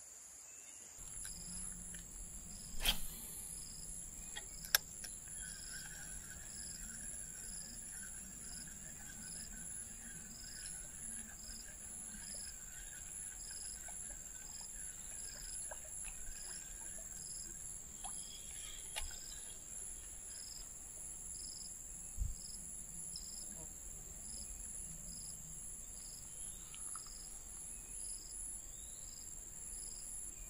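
Insects shrilling in steady high-pitched tones, with a softer chirp repeating about one and a half times a second. A few sharp knocks stand out, the loudest about three seconds in.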